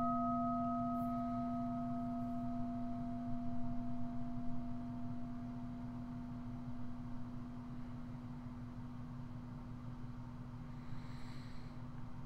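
A small meditation bell, struck just before, ringing on and slowly dying away: a steady low hum with higher, brighter overtones that fade within the first few seconds. It is a mindfulness bell, whose sound calls listeners back to the present moment.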